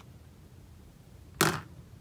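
A smartphone set down on a wooden tabletop: one sharp knock about a second and a half in.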